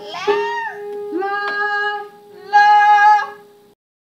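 Several voices singing a cappella without words: one holds a steady note throughout while the others sing a few shorter held notes above it, a rough attempt at barbershop-style harmony. The singing stops abruptly near the end.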